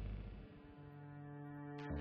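Serge Paperface modular synthesizer playing: a deep drone fades away in the first half second, then a quieter steady horn-like tone rich in overtones holds for about a second. A click comes near the end, just before the deep sound swells back.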